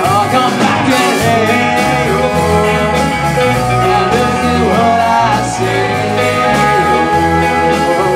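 Live rock band playing: electric guitars, bass guitar and a drum kit with a steady beat.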